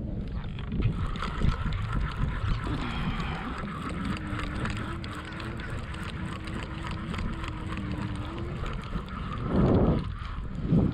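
Wind buffeting the microphone, with a faint steady drone in the middle and a louder gust or bump near the end.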